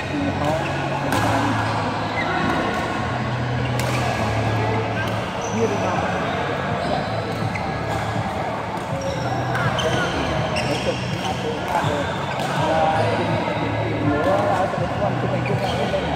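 Badminton play in a large indoor hall: shoes squeaking and thudding on the court and a few sharp racket hits on the shuttlecock, under a steady chatter of many voices.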